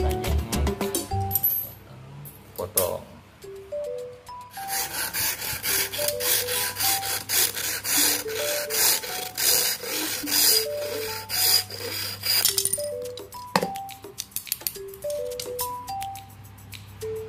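Hacksaw cutting a dome-tent frame pole with steady back-and-forth strokes, starting about four seconds in and stopping a few seconds before the end. Background music with short melodic notes plays throughout.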